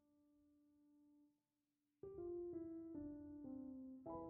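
Soft background piano music: a held note fades away into a brief pause, then about halfway through a new phrase of notes steps downward.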